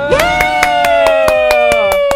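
A long, high held vocal note, sung or called out and falling slightly just before it stops, over fast rhythmic hand clapping.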